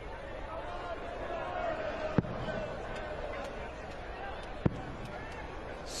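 Two darts striking the dartboard, two sharp short thuds about two and a half seconds apart, over a steady murmur from the arena crowd.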